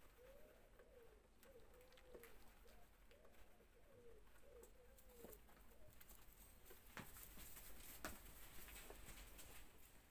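Faint bird cooing: a run of soft calls, each rising and falling in pitch, over the first five seconds or so. A few faint clicks follow between about seven and nine seconds in.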